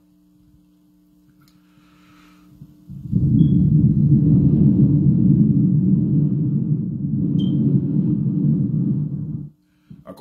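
A person blowing hard into a handheld microphone from close up: a loud, rough rumble of breath starts about three seconds in, holds for about six seconds and cuts off abruptly near the end. It is a deliberate long blow into the mic, a ritual breath meant to impart the anointing; a faint steady mains hum comes before it.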